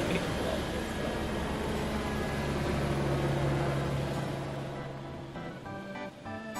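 Helicopter engine and rotor noise, a steady hum, fading out about five seconds in as music starts.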